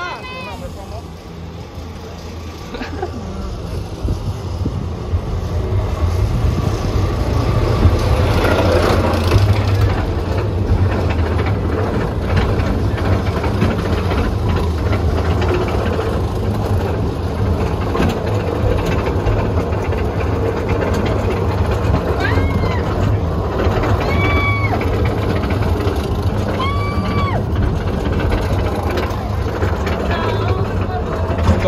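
Roller coaster train climbing its lift hill: a steady low mechanical rumble that builds over the first several seconds and then holds. Three short high-pitched cries from riders come about two thirds of the way through.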